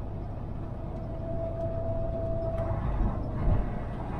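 Semi truck driving, heard from inside the cab: a steady low engine and road rumble. A faint steady whine runs for about two seconds in the middle, and a couple of low thumps come near the end.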